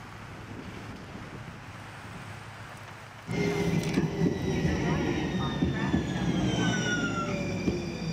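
Faint outdoor hiss, then from about three seconds in a Metro light-rail train running past: a low rumble with several high whining tones that slowly fall in pitch, typical of the traction motors as the train slows.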